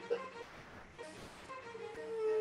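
Quiet playback of a sampled cello part in a song's arrangement, with long bowed notes held; a new sustained note swells in about one and a half seconds in.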